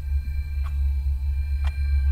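A low, steady background drone with a couple of faint soft ticks.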